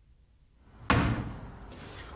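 A single sharp slam about a second in, dying away over the next second with room echo.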